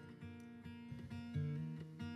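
Soft background music of gently plucked acoustic guitar.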